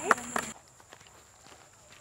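A group clapping hands in a steady rhythm, about four claps a second, with a voice among them. The clapping stops abruptly about half a second in, leaving only faint outdoor background.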